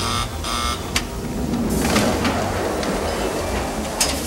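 Water-survival training cockpit rig running on its rail above a pool. Mechanical rattling with a sharp click about a second in, then a dense rushing noise from about two seconds in.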